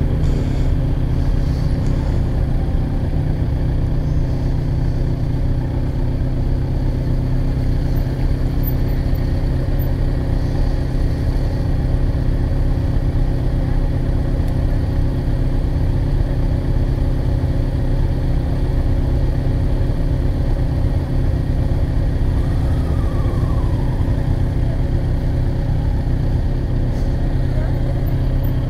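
Kawasaki Z900 inline-four engine idling steadily, a low even rumble, through a full aftermarket Jeskap exhaust.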